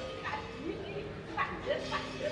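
Three short vocal cries from a person's voice, the last two close together, over a faint steady held tone.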